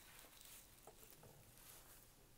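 Near silence, with a faint rustle and a few small clicks of a sheet of painted paper being handled.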